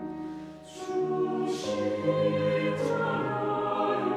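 Mixed choir singing a slow Korean sacred anthem with piano accompaniment. The sound dips briefly about half a second in, then the voices come back in louder on a new phrase, with crisp 's' consonants.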